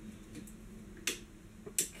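Two sharp clicks from a plastic phone-holder clamp being handled and twisted, a lighter one about a second in and a louder one near the end, over faint handling noise.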